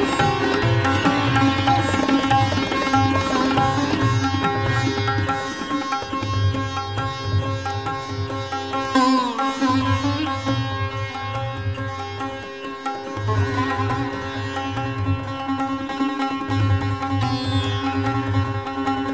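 Sitar playing a fast drut gat in Raag Puriya, set to teentaal, in quick plucked runs with a sliding pitch bend about nine seconds in. Low tabla strokes come and go underneath.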